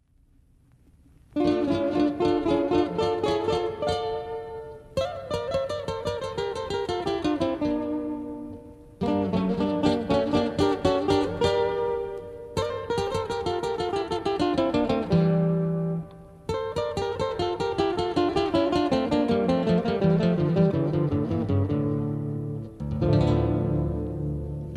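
Acoustic guitar playing an instrumental introduction with no singing. It plays five phrases of plucked, mostly descending runs, each opening with a fresh strong attack, starting about a second in. Fuller low notes come in near the end.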